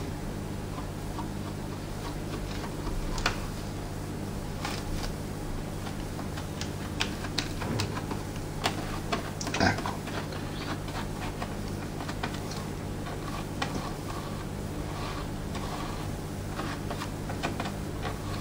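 Light scattered taps and short scrapes of a small flat-blade screwdriver spreading soft flexible glue over a reinforcement strip on the inside of an RC car body, a few sharper clicks among them, over a steady low hum.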